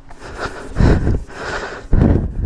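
A few loud rushes of breath noise on a helmet-mounted microphone, the strongest about a second in and again at the end.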